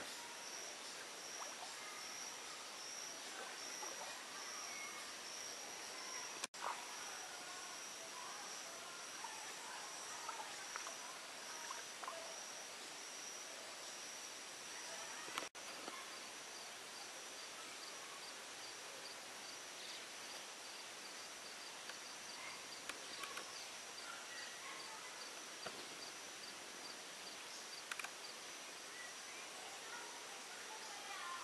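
Steady high-pitched trilling of insects over a faint, even background hiss of forest-stream surroundings. For several seconds after the middle, a second, faster pulsing insect call joins in. The sound drops out briefly twice, about six and fifteen seconds in.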